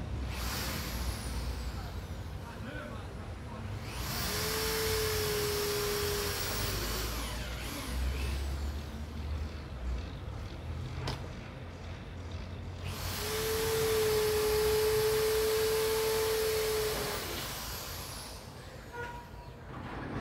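A motor runs twice, for about three seconds and then about four seconds, each time a steady hum over a loud hiss that starts and stops sharply.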